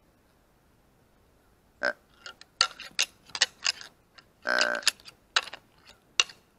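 Whitetail deer grunt call blown twice: a short grunt about two seconds in and a longer one a little before the end, imitating a rutting buck. Sharp clicks and knocks fall between and around the grunts.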